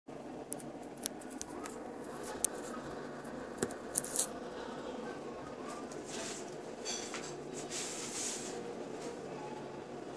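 Faint steady background hum with a handful of sharp, short clicks in the first four seconds, followed by a few soft rustling swells.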